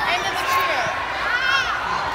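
Indistinct chatter of many voices talking at once, with no single clear speaker.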